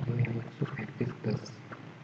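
A man's voice muttering indistinctly in short broken sounds, trailing off near the end.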